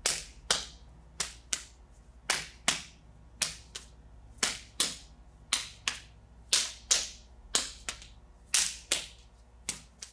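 Palms slapping against forearms and wrists in a Wing Chun pak sao partner drill: sharp slaps about two a second, mostly in close pairs about once a second as the parry meets the incoming arm and the counter follows.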